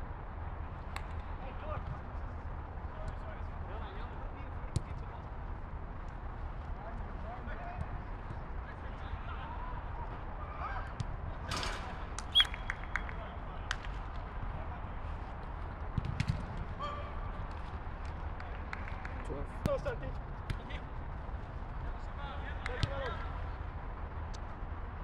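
Outdoor five-a-side football game: players shouting to each other at a distance and occasional sharp ball kicks, the loudest about halfway through, over a steady low rumble.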